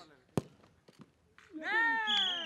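A football kicked hard once in a shooting drill: a single sharp thud about a third of a second in.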